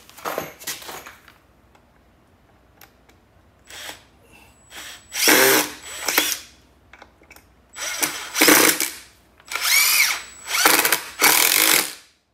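Cordless impact driver driving three-inch deck screws through two-by-six boards and a plywood spacer, in a short burst at the start and then several runs of about a second each in the second half.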